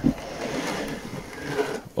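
White varroa monitoring board sliding out of its slot under a wooden beehive, a steady scraping that swells a little near the end.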